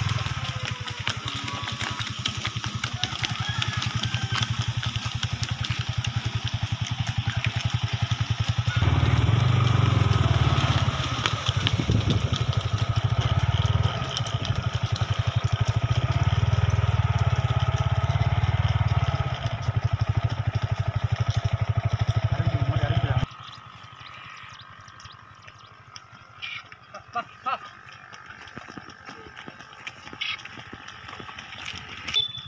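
A motorcycle engine running steadily at low speed. It gets louder about nine seconds in, then cuts off abruptly about 23 seconds in, leaving a few faint knocks.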